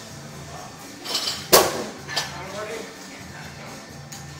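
Gym weights clanking: one loud, sharp metal clank about a second and a half in, followed by a smaller clink, over background music and chatter.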